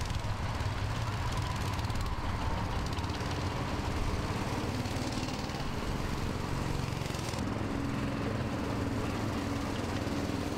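Small go-kart engines running steadily, with the engine note shifting about seven seconds in.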